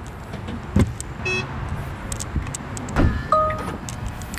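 Car trunk and door handling: a sharp thump just before a second in, a quick run of clicks, then another thump near three seconds followed by a short electronic beep from the car.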